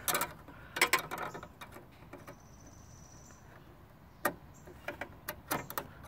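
Scattered light clicks and taps of a metal tool and parts being handled inside a microwave oven's sheet-metal cabinet, a few at a time, with a small cluster near the end.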